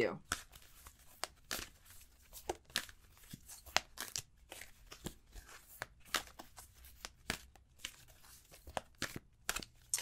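A deck of tarot cards shuffled by hand: a scatter of irregular, short soft clicks and snaps of the cards against each other.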